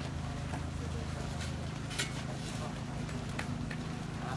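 Steady low hum under faint murmuring of a gathered crowd, with a few sharp clicks about one and a half, two and three and a half seconds in.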